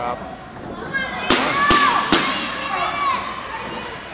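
Three sharp smacks in quick succession in a wrestling ring, about 0.4 s apart, a little over a second in. Voices shout over them.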